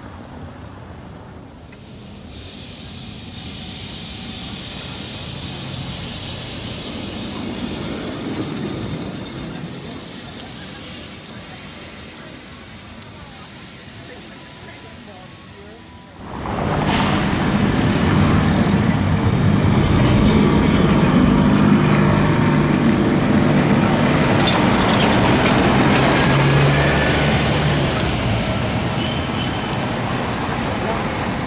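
A van passes on a cobbled street, its sound swelling and fading. About halfway through, a sudden change to a louder busy street, where a vintage Lisbon tram running on its rails is heard under people talking.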